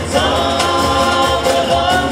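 Male voices singing a Vietnamese pop song live in harmony, over strummed acoustic guitars and a cajon keeping the beat.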